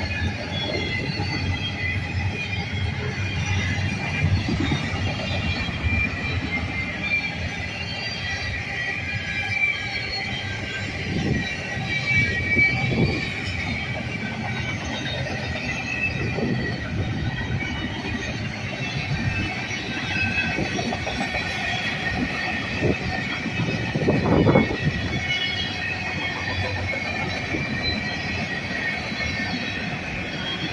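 CSX freight train of double-stack container cars and flatcars rolling past: steady rumble of wheels on rail with high wheel squeal throughout. A few louder knocks sound, the loudest about 24 seconds in.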